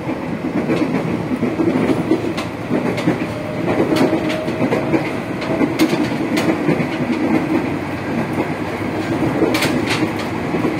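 Interior running noise of a 205 series electric commuter train's motor car with Toyo Denki IGBT VVVF traction equipment: a steady rumble of wheels on track with irregular clicks of the wheels passing rail joints, the sharpest click near the end.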